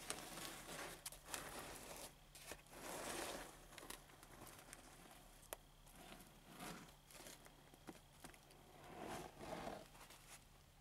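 Faint crinkling and rustling of a tape-covered aluminium-foil sculpture being handled and shifted about, with a few light clicks.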